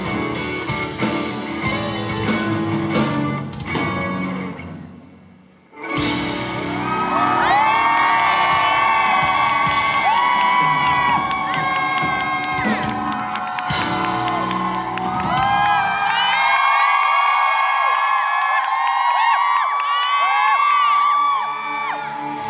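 A live band's song dies away over the first few seconds. Then loud crowd cheering, with many high whoops and screams, breaks in suddenly about six seconds in and carries on to the end.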